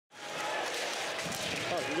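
Ice hockey arena sound during live play: a steady crowd murmur, with a man's commentary voice coming in near the end.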